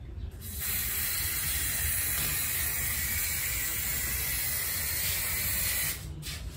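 Aerosol spray can of gray primer spraying in one continuous hiss, starting about half a second in and cutting off sharply just before the end.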